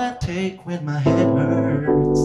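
Live song: a male voice finishes a sung phrase over a Roland FP-4 digital piano, then a chord is held on the keyboard from about a second in.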